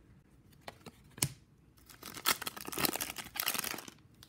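A couple of light clicks, then about two seconds of crinkling and tearing from the foil wrapper of a trading-card pack as it is handled and ripped open.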